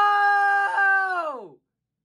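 A young man's long, drawn-out shout of "No!", held on one pitch, then sliding down in pitch and fading out about a second and a half in.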